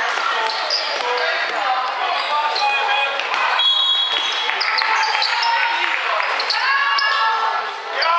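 Basketball being dribbled on a sports-hall floor during play, amid many overlapping voices of players and spectators in a large, echoing hall.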